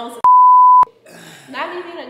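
A censor bleep: a single steady high beep about half a second long that cuts in and out abruptly over a word, with talking resuming shortly after.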